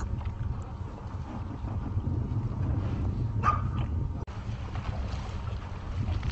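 Steady low wind rumble on the microphone, with one brief whine from a stranded dog about three and a half seconds in.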